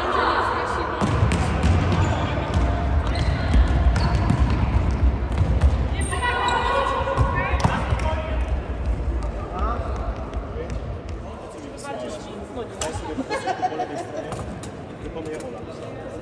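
A futsal ball thudding as it is kicked and bounces on an indoor court floor, with players' shouts and calls among the knocks.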